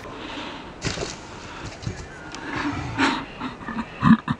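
A scooter rider hitting the ground with a couple of thumps, then hoarse groaning and gasping from the fallen rider, loudest about three seconds in.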